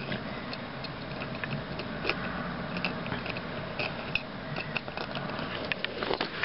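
Plastic toy parts being handled: scattered small clicks and clacks as the front legs of a Power Rangers Samurai Sharkzord toy are pulled off and fitted.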